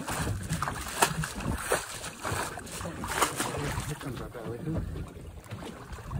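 Water lapping against a small boat's hull with wind buffeting the microphone, and a few sharp knocks about one, two and three seconds in.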